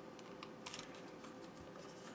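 Faint, light plastic clicks and handling noise from a wireless computer mouse being worked in the hands as its battery cover is pried at.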